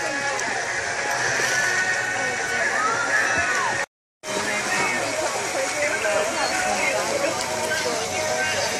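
Busy swimming pool: many overlapping children's voices chattering and shouting with water splashing. The sound cuts out completely for a moment about four seconds in.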